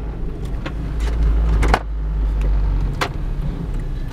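Toyota Corolla's engine and road noise heard from inside the cabin while driving, a steady low rumble. A few brief knocks or clicks sound over it, the loudest about one and a half seconds in.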